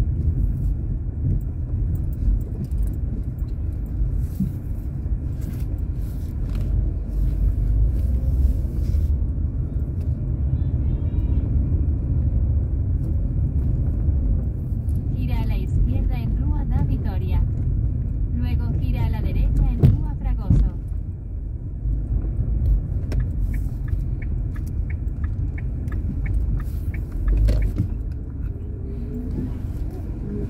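Inside a car driving slowly along a town street: a steady low rumble of engine and tyres, with a person's voice heard briefly twice around the middle.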